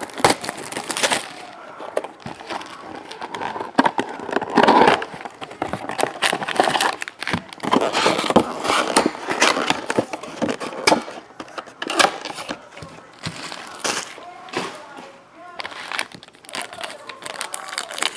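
Plastic shrink wrap crinkling and tearing as a sealed trading-card hobby box is unwrapped and opened, with irregular rustles and scrapes of the cardboard box and its foil-wrapped pack being handled.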